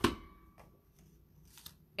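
A single sharp clack from a handheld paper label punch right at the start, then quiet room tone with one faint tick shortly before the end.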